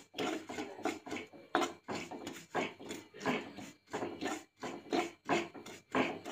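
Metal spoon scraping dry ground coffee powder around an aluminium pan, in repeated strokes about two a second, as the powder is roasted.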